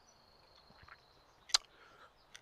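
Quiet pause with a faint, steady high-pitched tone for about the first second, then a single sharp click about a second and a half in.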